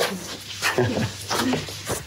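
Short, broken bursts of children's laughter and excited voices.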